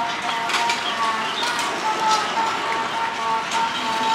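Outdoor street-market bustle: scattered knocks and clatter from stalls being set up, over a thin, steady tune-like tone that steps between a few pitches in the background.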